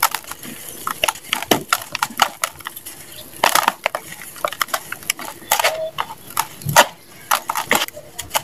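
A moulded block of dry, crunchy red sand being crumbled by hand, giving a run of irregular crisp crackles as it breaks apart, with loose sand pouring into a plastic tub.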